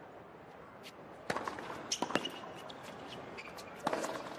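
Tennis ball struck by rackets and bouncing on a hard court during a short rally: a handful of sharp pops, irregularly spaced, starting about a second in, over a low crowd murmur.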